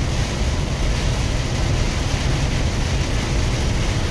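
Inside a big truck's cab on the highway in heavy rain: a steady low rumble of engine and road with an even hiss of rain and wet tyres.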